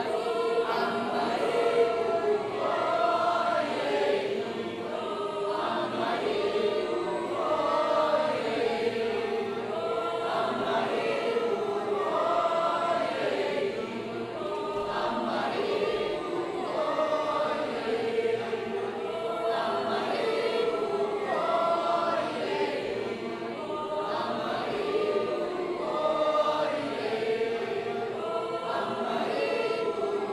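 A concert audience singing a canon together: many voices in a round, the parts overlapping continuously.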